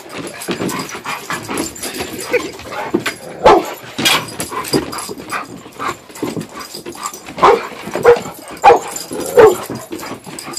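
Dog barking in short barks: one about three and a half seconds in, then four in quick succession near the end, with quieter sounds between.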